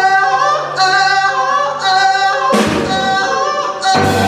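Female blues vocalist singing a held, bending melodic line live, with the band dropped back almost to nothing beneath her. Band hits with a crash come in about two and a half seconds in and again just before the end.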